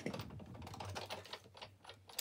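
An irregular run of light clicks and taps from craft supplies and card being handled on a table.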